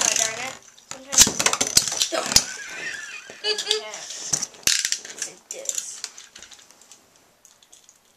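A metal Beyblade spinning top spins in a plastic stadium, rattling and clicking against the dish. The clatter is loudest in the first couple of seconds, then fades as the top settles and slows.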